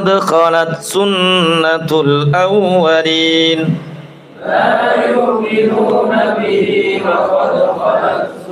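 A man chanting Qur'an recitation in a melodic, drawn-out style for about three and a half seconds. After a brief pause, several voices chant together.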